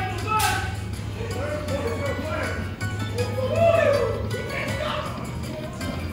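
Aristocrat Dragon Cash Panda Magic slot machine playing its free-game bonus music, with chiming melodic tones as the reels spin and land wins. There is a sharp click about half a second in, over a steady low hum.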